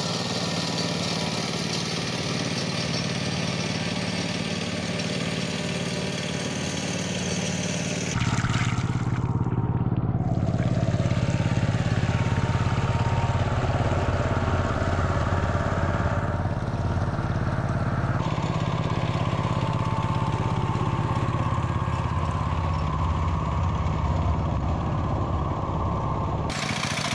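Two-wheel walking tractor's single-cylinder diesel engine running steadily as it pulls a loaded trailer. The engine sound shifts abruptly twice, getting louder and heavier about a third of the way in.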